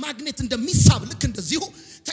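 A man preaching loudly and rapidly into a handheld microphone, his delivery fast and rhythmic.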